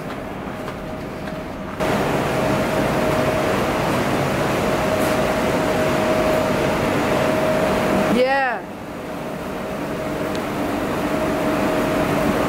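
Steady mechanical hum of ventilation or air-conditioning units, with a constant droning tone. It gets louder about two seconds in and dips briefly past eight seconds.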